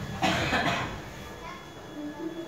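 A single loud, harsh cough from a worshipper about a quarter second in, followed by quieter shuffling as the congregation goes down into prostration.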